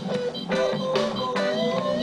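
A band playing a reggae song live, with an electric guitar carrying the melody over bass and drums in an instrumental passage without singing.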